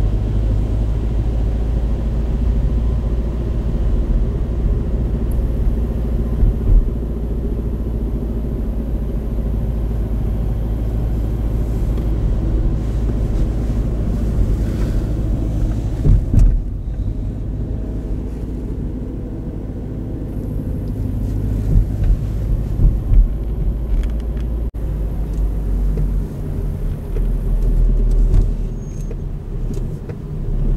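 Car driving on a winding road, heard from inside the cabin: steady low engine and tyre rumble, with a few brief knocks from bumps in the road.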